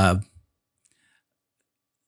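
The end of a man's hesitant "uh", then near silence with a faint click about a second in.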